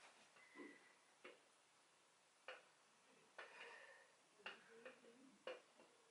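Near silence with a few faint, irregular clicks, spaced about a second apart, from plate-loaded dumbbells shifting during slow deadlift reps.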